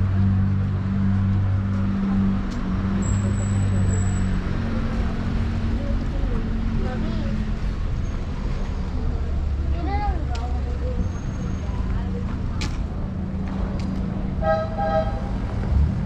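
City street traffic: a steady low engine hum from cars, with faint voices of passers-by, and a car horn tooting briefly near the end.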